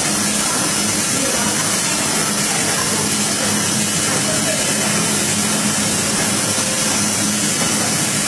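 1200PC automatic high-speed folder-gluer running steadily, carrying carton blanks through its belts: a constant loud mechanical noise with a strong hiss over a steady low hum.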